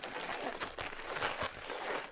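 Latex twisting balloons (a 350 and a 260) rubbing against each other as they are twisted together, a soft, irregular rustling.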